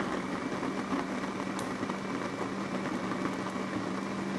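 Countertop electric blender running steadily, blending a thick mix of papaya, prunes, ground flaxseed and orange juice, with a constant low hum under the motor noise.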